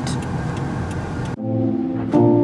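Steady engine and road rumble heard from inside a car's cabin, cut off sharply about a second and a half in by background music with sustained chords.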